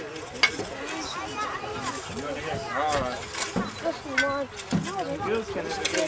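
Several voices chatter in the background while steel shovels scrape and knock in soil, digging the earth cover off a steaming hangi pit, with a few sharp clinks.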